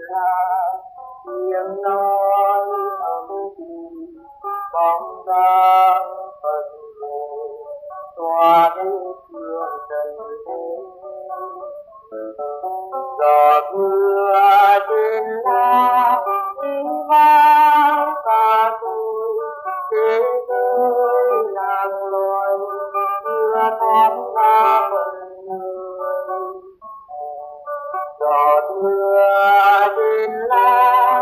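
A song: a high voice singing a slow melody with instrumental accompaniment.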